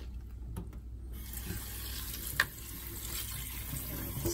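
Kitchen tap running, water streaming onto a potted orchid's roots and splashing into a stainless steel sink; the steady rush fills out about a second in. A single short knock about halfway through.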